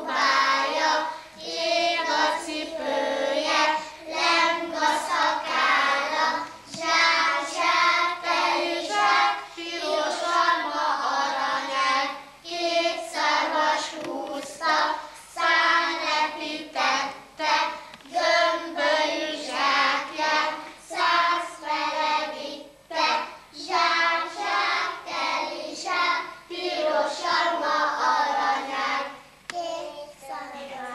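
A group of young children singing a song together, their voices carrying on continuously with short breaks between phrases.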